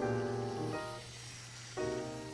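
Background music: a held chord that fades about three quarters of a second in, then a second chord starting near the end.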